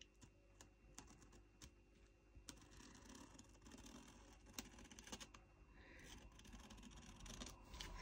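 Near silence with faint, scattered light clicks and scratches from fingers pressing and handling the plastic cover film and a straight edge on a diamond-painting canvas.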